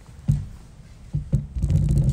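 Handling noise on the recording phone: a low thump, then two more about a second in, then a short low rumble as the phone is jostled.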